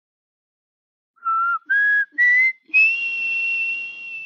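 Whistling: four notes stepping up in pitch, starting about a second in, with the last and highest note held and still sounding at the end.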